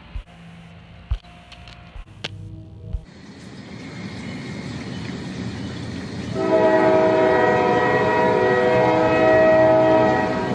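Rumble of an approaching train growing steadily louder, then a chord-like train horn sounding continuously from about six and a half seconds in. A few light clicks and thumps come before the rumble.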